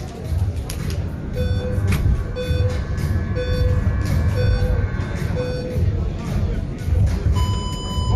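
Electronic boxing round timer: five short beeps about a second apart, then a longer, higher beep near the end, the countdown and the signal to start the round. A steady low rumble of hall noise runs underneath.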